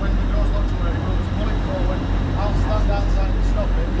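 Railway platform ambience: a steady low hum from the stationary train and station, with indistinct voices talking in the background.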